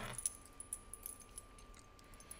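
Faint handling of a leather-covered notebook as it is lifted and closed, with a few light metallic clicks and jingles.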